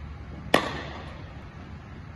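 Cricket bat striking a hand-thrown cricket ball once, a sharp crack about half a second in, echoing briefly in a large indoor hall.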